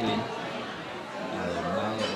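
People talking, chatter of voices in the room.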